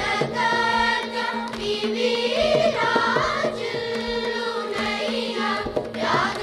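A children's group singing a Carnatic song in unison over a steady drone, with mridangam strokes underneath.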